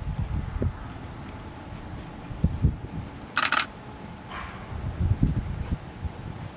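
Irregular low bumps and rustling close to the microphone as a puppy noses about on gritty sand, with one short, sharp high-pitched sound just past the middle.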